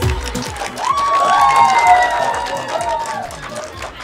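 A small group clapping and cheering, with a voice rising and falling over the clapping about a second in, over background music with a beat.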